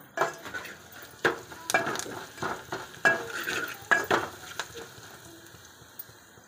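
Metal spoon stirring and scraping in a small aluminium pot, knocking sharply against its sides several times, while a tempering of onions, green chillies and curry leaves fries in oil with a low sizzle.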